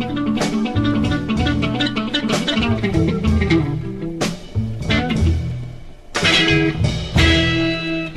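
Late-1960s psychedelic blues/jazz-rock band recording: electric guitar over bass and drums. There is a brief lull about six seconds in before the band comes back in full.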